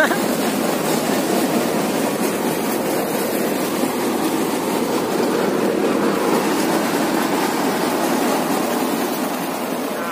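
Tractor-driven Bhaike paddy threshing machine running steadily at work, a continuous dense mechanical din.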